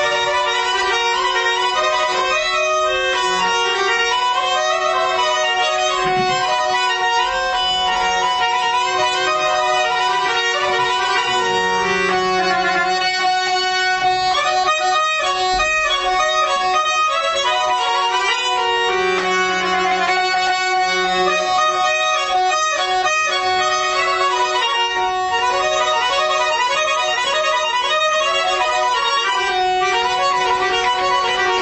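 Accordion playing a melody over a steady held drone note, with other instruments, in Azerbaijani mugham-style folk music.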